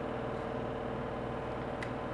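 Steady background hum and hiss of a room, with a single faint click near the end.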